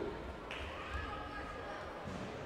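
Indistinct voices ringing in a large sports hall, with dull low thuds underneath.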